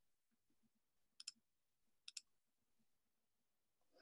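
Near silence broken by two faint, sharp double clicks, about a second apart.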